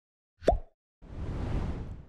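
A short edited-in pop sound effect about half a second in, its pitch sweeping quickly upward, followed from about a second in by a low, noisy whoosh that swells and then fades, as the outro card's like-button animation comes in.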